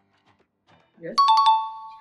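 Two-note descending chime, a doorbell-style ding-dong, rings out just after a spoken "yes" and holds on: a quiz-show sound effect marking a correct answer.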